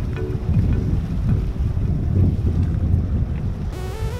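Low rumble of a small commercial fishing boat motoring past at slow speed, mixed with wind on the microphone, under faint electronic background music. The music comes back in strongly near the end.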